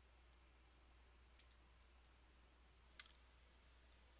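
Near silence with a faint low hum, broken by the sharp clicks of a computer mouse: a quick double-click a little under halfway through, then a single click about three-quarters of the way through.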